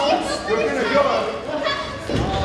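Spectators shouting and calling out over one another, children's voices among the adults'.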